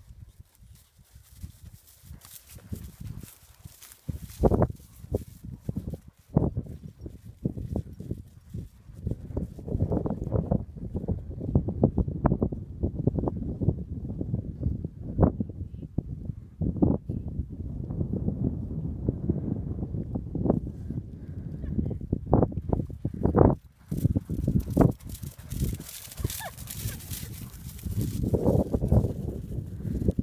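Horse's hoofbeats on a stubble field as it is ridden off at a canter, under an irregular low rumble with scattered sharp thumps.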